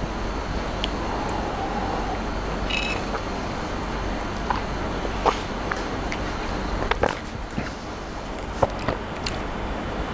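Steady background hiss and low hum, broken by a few small, sharp clicks and sips as whisky is tasted from a glass.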